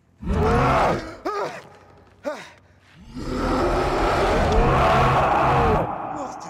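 The Hulk roaring, a deep bellowing creature voice: a short roar, two brief grunts, then a long roar starting about three seconds in and lasting nearly three seconds.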